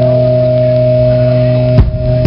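A rock band's electric guitars let a chord ring out, sustained steadily, until a drum-kit hit breaks in near the end and starts the beat.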